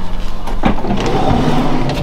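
A cargo van's sliding side door is pulled open: a knock about half a second in, then a rolling rush along its track for about a second and a half. A steady low hum runs underneath.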